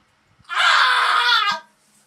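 A person's scream lasting about a second, voiced for an animated girl character, its pitch falling away just before it cuts off.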